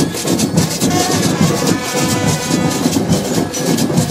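Marching band percussion playing a loud, steady march rhythm: drums and metal percussion struck in unbroken repeating strokes.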